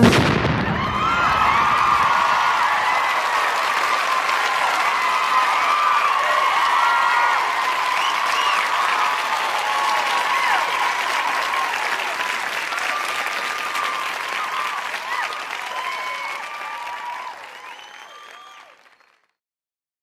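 Audience cheering and applauding, with whoops and shouts over steady clapping, fading out near the end.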